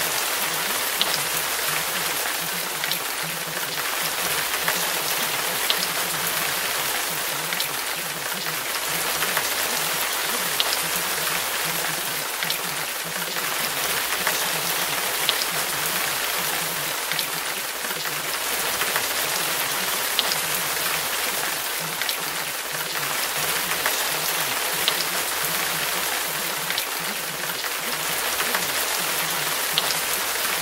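Steady rain, an even hiss with scattered light ticks of single drops.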